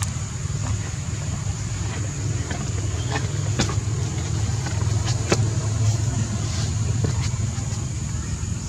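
A steady low rumble, like a motor running nearby, with a thin steady high whine above it and a few faint clicks.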